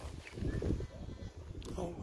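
A woman's voice exclaiming "oh" near the end, over a low, uneven rumble.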